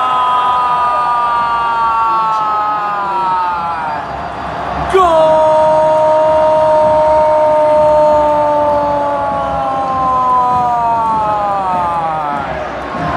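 A football commentator's drawn-out goal cry, 'gooool', held in long breaths. Each held note slides slowly down in pitch: the first fades about four seconds in, and a second long one starts at about five seconds and runs nearly to the end.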